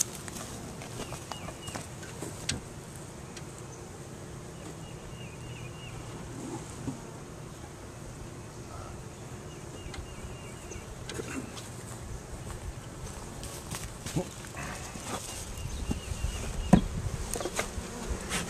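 Honeybees buzzing steadily around an opened hive, with a few light knocks, several near the end.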